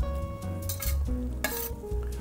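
A metal spatula scraping chorizo out of a skillet into a Dutch oven and stirring it into sizzling beef and onions, with a few sharp scrapes and clinks. Soft background music plays underneath.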